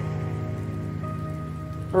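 Background music: a soft, steady pad of held tones with no beat.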